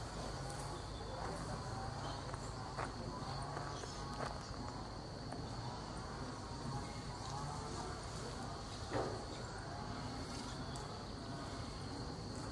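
Rural pasture ambience: a steady high insect buzz over a low rumble, with a few soft footfalls from someone walking through the grass.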